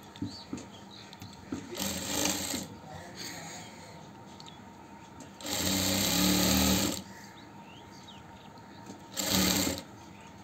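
Electric sewing machine running in three short stitching bursts, the longest and loudest about midway, as a folded fabric strip is sewn onto cloth to make piping.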